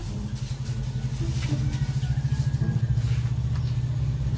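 An engine idling steadily, with a fast, even pulse.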